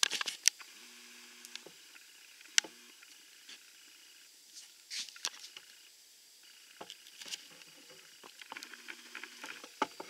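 Handling noise on a metal soda keg and its lid, heard up close: scattered light clicks, taps and short scrapes. There are a few sharper clicks at the start, one about two and a half seconds in, a small group halfway through, and one near the end.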